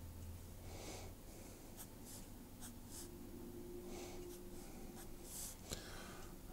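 Felt-tip fineliner pen drawing short strokes on paper: a string of faint, brief scratches at irregular intervals.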